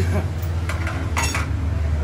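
Old motorcycle tyre being worked off an alloy rim on a tyre-changing machine: a few short metallic clinks of the tyre lever and rim against the machine, the loudest a little over a second in, over a steady low machine hum.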